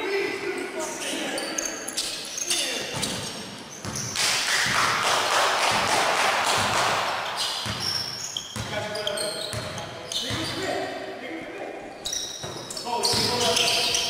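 Indoor basketball game: players' voices calling out across the court over a bouncing basketball and short sharp knocks of play, in a reverberant gym hall. A louder, noisier stretch of shouting comes in the middle.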